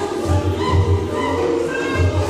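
A youth choir singing a Damara/Nama song in several parts over a low, pulsing beat.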